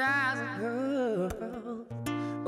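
A man's voice singing a winding, wordless melody that glides up and down in pitch, over sustained low notes of an acoustic guitar accompaniment.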